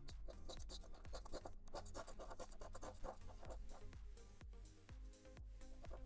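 A coin scratching the coating off a scratch-off lottery ticket in quick repeated strokes, with electronic background music under it.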